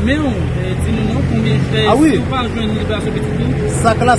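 Speech heard twice, near the start and again around the middle, over a steady low rumble.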